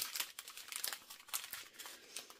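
Thin plastic crinkling in irregular sharp crackles as strips of small sealed diamond-painting drill bags are handled and shifted.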